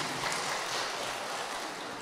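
A steady background hiss with no speech, growing slightly quieter.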